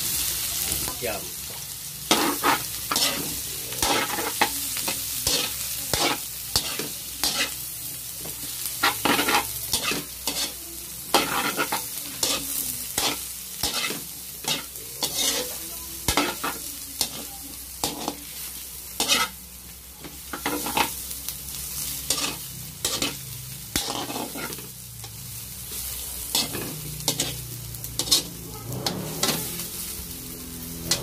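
Squid balls and kikiam sizzling in hot oil in a steel wok, turned with a metal spatula that scrapes and knocks against the pan in quick irregular strokes, a little over one a second, over the steady hiss of frying.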